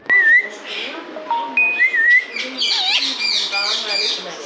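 Rose-ringed parakeet whistling and chirping: wavering and level whistled notes for the first two seconds, then a quick run of short, falling chirps.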